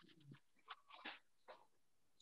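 Near silence on a video call, broken by a few faint, brief sounds: a short sound falling in pitch at the start, then three soft short sounds about a second apart.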